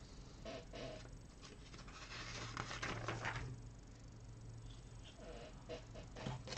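Faint clicks and rattles of plastic Lego bricks being handled and pressed together, in scattered clusters over a steady low hum.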